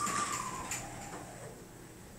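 Otis traction elevator car setting off: a high machine whine that slides slightly down in pitch and fades out within the first second, leaving the car quiet.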